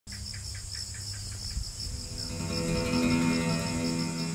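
Night insects, crickets, chirping in a steady high, pulsing trill, with a lower run of quick chirps that stops after about a second. Background music fades in about halfway and grows louder.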